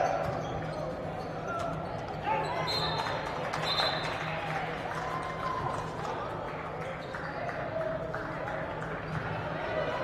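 Basketball bouncing on a hardwood gym floor, with a few short high squeaks from sneakers and voices from the crowd and benches echoing in the gym.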